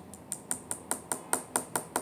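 Long fingernails tapping on tarot cards lying on a table: a quick, fairly even run of about nine light clicks, roughly four or five a second.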